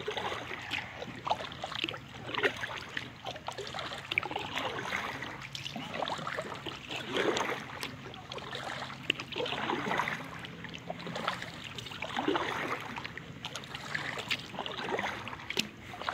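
Kayak paddle dipping into calm river water, stroke after stroke, with splashes and drips every second or two.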